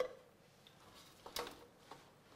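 Quiet kitchen with a few faint, single clicks and knocks of dishes and utensils being handled on a counter: one at the start, and fainter ones about a second and a half in and near the end.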